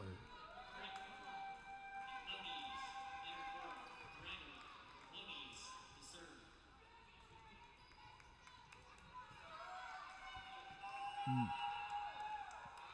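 Quiet gymnasium ambience with faint voices and a ball bouncing on the hardwood court, under a faint steady tone that fades out after about three seconds and returns near the end.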